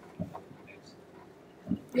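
A short pause in the talk: quiet room tone with a few brief, faint voice sounds. A voice starts to speak near the end.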